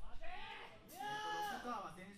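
A voice shouting two long, drawn-out, high-pitched calls whose pitch rises and falls, the second one held longer, with a short hiss just before it.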